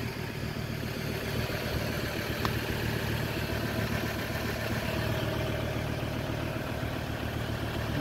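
Diesel engine of a Ford Ranger 3.2 TDCi idling steadily, an even low hum with no change in speed.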